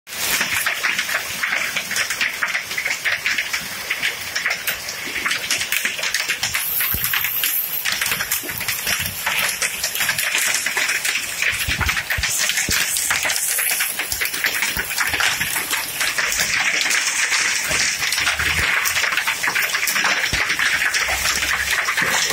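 Hailstorm with heavy rain: a dense, steady patter of small hailstones striking a paved terrace over the hiss of the downpour.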